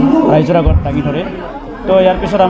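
Speech only: a man talking to press microphones.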